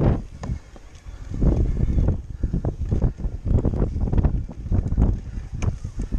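Wind buffeting the microphone as a Cube Stereo Hybrid 160 electric full-suspension mountain bike rolls down rough dirt singletrack. The rumble comes in uneven gusts, with scattered rattles and knocks from the bike over the ground, and eases briefly about a second in.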